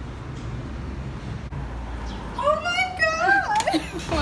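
A low, steady rumble on the microphone, then a little past halfway a high-pitched voice calling out in sliding, squealing glides that runs on to the end.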